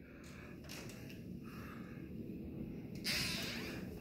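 Faint room tone with low handling noise from a handheld phone being moved. A soft hiss rises about three seconds in.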